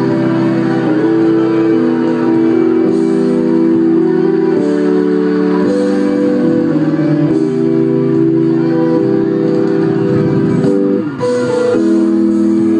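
Chords played on an electronic keyboard, each held about a second before changing to the next. There is a brief gap about eleven seconds in.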